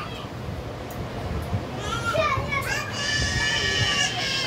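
A child's high-pitched voice calling out, starting about halfway through and holding a long high note near the end, over a low background rumble.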